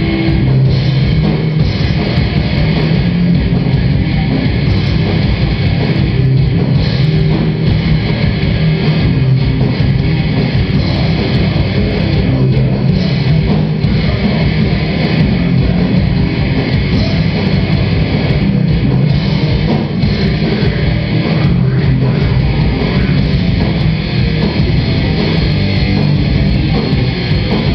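Death metal band playing live on distorted electric guitars, bass guitar and drum kit. The sound is loud and dense, and keeps a steady level throughout.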